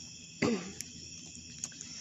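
A woman's single short cough about half a second in, with a brief falling pitch. Crickets chirr steadily in the background.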